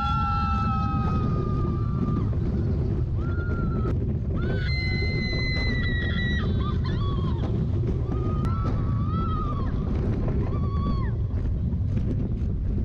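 Roller coaster riders screaming in several long, held cries over a loud, steady rush of wind and ride noise from the moving train. The highest and longest scream comes a little before the middle, and shorter ones come near the end.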